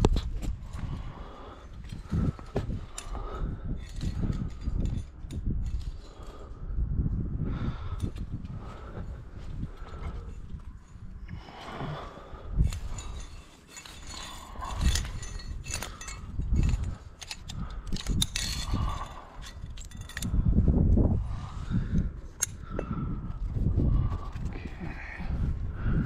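Climbing gear clinking and rope rustling as a lead climber moves up sandstone and clips the rope into a quickdraw, with scattered sharp clicks of carabiners and hardware. Low rumbling surges of wind on the microphone come and go throughout.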